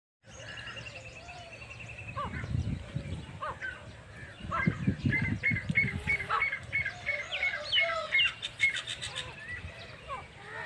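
Several birds calling at once: a fast high trill for the first two seconds, then a run of short repeated chirps, about three a second, through the second half, with a few low rumbles near the middle.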